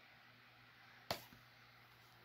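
Near silence broken about a second in by one sharp clack from a plastic DVD case being handled, with a fainter tick just after.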